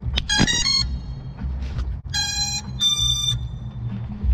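FPV quadcopter's ESCs sounding electronic startup tones through the motors, typical of a battery just plugged in. A quick run of short notes comes near the start, then two longer steady beeps around the middle, the second higher, over a low rumble.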